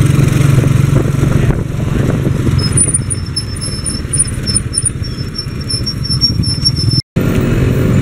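Small motorcycle engine running as the vehicle drives along, with road and wind noise around it, heard from the passenger seat. A thin high whine sits on top for a few seconds in the middle. The sound breaks off suddenly near the end at a cut.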